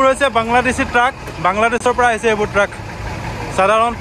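A voice talking, with a truck's diesel engine idling low underneath.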